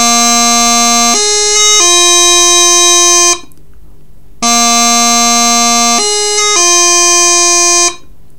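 Practice chanter playing low A, then a slow, held G grace note, then E, twice with a short gap between. Each time the G grace note lasts well over half a second before the finger comes down onto E.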